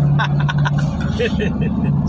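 Steady engine and road drone heard from inside the cabin of a moving vehicle, with brief snatches of voice over it.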